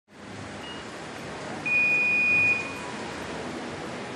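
Electronic start-signal beep at a canoe slalom start: a brief faint beep, then a loud steady beep lasting just under a second, over a steady rush of white water.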